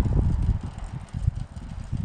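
Wind buffeting the microphone outdoors: an uneven low rumble that comes and goes.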